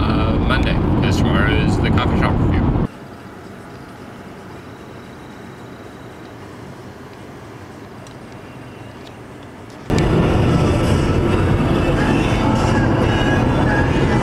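Road and engine noise inside a moving car's cabin, a steady low rumble. For the first three seconds a man is also talking. About three seconds in it cuts to a much quieter, even hiss, and the driving rumble returns about ten seconds in.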